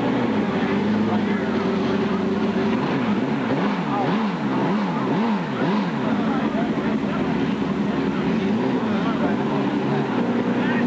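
Drag-racing motorcycle engine idling at the starting line, blipped up and down in about five quick revs between three and six seconds in, then settling back to a lumpy idle with a couple of gentler revs near the end.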